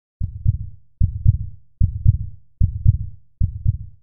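Heartbeat sound effect: five low lub-dub double thumps, evenly spaced about 0.8 s apart.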